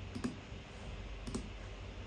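A few scattered computer mouse clicks over faint room noise.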